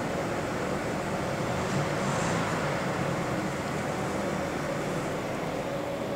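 Steady background hum and hiss with one constant mid-pitched tone running under it.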